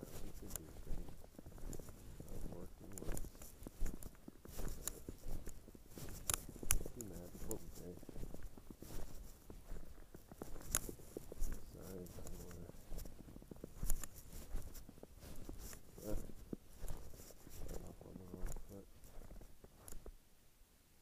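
A low, indistinct voice comes and goes every few seconds, with scattered sharp clicks and rustles throughout.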